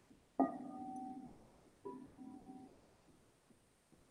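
Clear crystal singing bowl struck twice with a mallet, each strike ringing with a few clear tones that fade within about a second; the second strike is softer.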